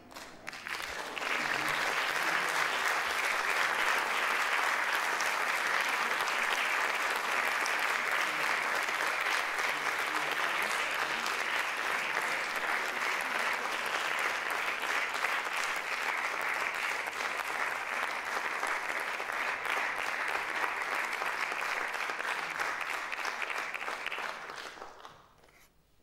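Audience applauding, swelling in about a second in and holding steady until it begins to die away at the very end.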